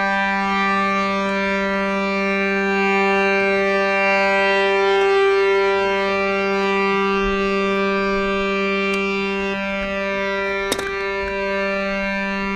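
Harmonium holding one steady reedy chord as a drone, with no melody or rhythm. A single sharp knock sounds near the end.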